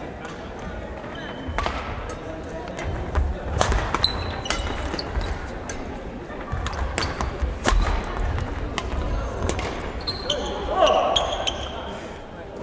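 Badminton doubles rally: rackets hitting the shuttlecock about once a second, with short shoe squeaks on the hall's wooden floor. A player's voice calls out near the end.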